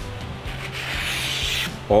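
Hand-made Japanese kitchen knife slicing through a sheet of paper held in the air: one long, even hiss of blade cutting paper, lasting about a second and a half. The unbroken slice shows a very keen edge.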